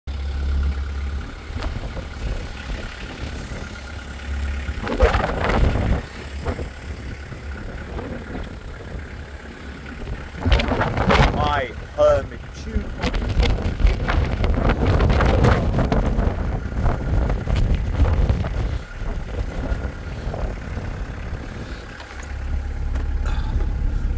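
Wind buffeting the microphone, heard as a low rumble that rises and falls, under a man's voice talking in short stretches.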